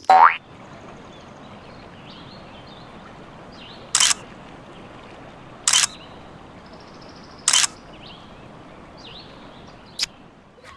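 Camera shutter sound three times, a short sharp click-burst every second and a half or so, after a brief falling 'boing' sound effect at the very start, over a faint steady outdoor background.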